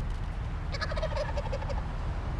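Wild turkey tom gobbling once: a rapid rattling call of about a second, starting under a second in, over a steady low rumble.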